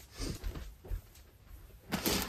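Faint rustling of paper envelopes and a clear plastic storage bin being lifted and moved off a table, with a light knock about a second in and a sharper click at the end.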